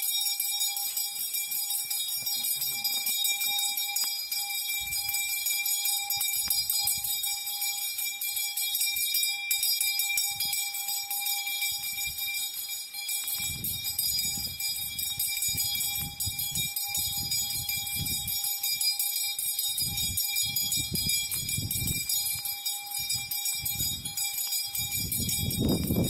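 A continuous high-pitched ringing that holds steady throughout, with low rumbles coming and going in the second half.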